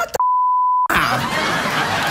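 Censor bleep: a single steady 1 kHz tone lasting under a second, with the programme sound muted beneath it, covering a swear word.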